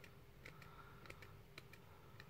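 Near silence: a handful of faint, small, irregular clicks from hands handling small tackle.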